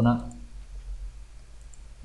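A few faint computer mouse clicks over a low steady hum.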